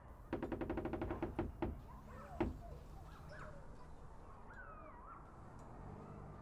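Rapid knocking, about ten raps a second for about a second, then two more raps and a single harder knock about two and a half seconds in.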